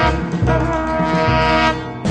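Early-1960s bossa nova jazz recording: a horn section of trombone, trumpet and saxophone playing held chords over bass and drums, the chord breaking off just before the end.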